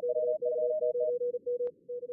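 Fast Morse code (CW) from simulated contest stations on two radios at two slightly different pitches, interleaved and overlapping, over a steady hiss of simulated band noise. A sharp click sounds near the end.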